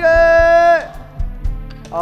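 A man's drawn-out shout, held on one high pitch until just under a second in, over background music with a steady beat.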